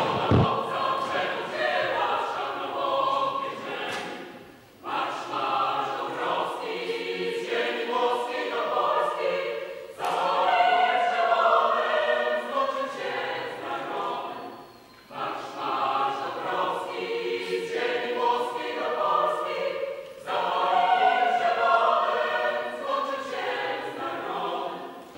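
A choir singing in phrases of about five seconds, with short breaks between them.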